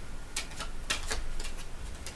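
Tarot cards being handled and shuffled over a table: a quick, irregular series of light, sharp card clicks and snaps.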